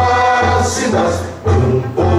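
Music with a choir singing over a steady bass line, dipping briefly about one and a half seconds in.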